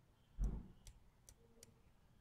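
Faint clicks of a stylus on a tablet screen during handwriting: a soft low thump about half a second in, then three light ticks.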